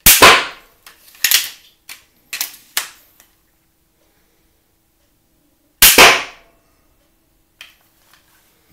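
Adderini magazine-fed pistol slingbow shooting: two sharp snaps about six seconds apart, each followed a fraction of a second later by a second crack. Between the two shots comes a run of lighter clacks as the slingbow is cycled for the next bolt.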